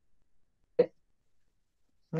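Dead silence from a video-call audio feed that is cutting out, broken once, a little under a second in, by a very short clipped fragment of a voice.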